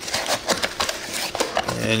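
Hands rummaging in a cardboard box and its plastic packaging: a quick, irregular run of crinkles and small clicks.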